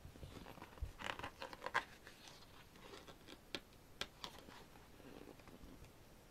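Pages of a large photobook album being turned and handled: faint paper rustles with a few light ticks scattered through.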